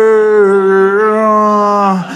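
A man singing one long held note with no clear words, in a mock slurred parody of a rock singer who can't pronounce his lyrics; the pitch sags slightly about halfway and the note breaks off near the end.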